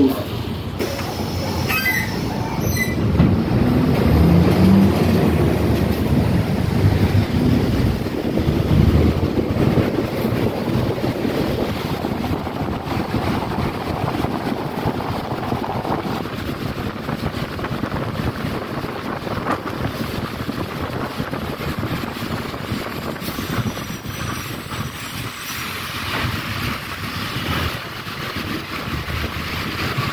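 City bus heard from inside while driving on a wet road: steady engine and tyre noise, with a heavier low rumble in the first ten seconds or so that eases later.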